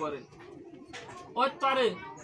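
A man's voice speaking: a short pause of about a second, then a brief phrase near the end with falling pitch.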